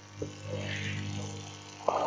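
A low, steady hum in a pause between words, with a faint click shortly after the start.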